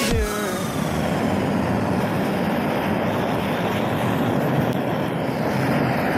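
Gas torch burning with a steady rushing noise as its flame plays on a plastic flip phone. A falling musical tone cuts off just as it begins.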